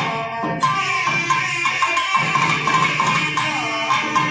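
Two nadaswarams playing a held, ornamented melody in raga Dwijavanthi, with thavil drum strokes accompanying them throughout.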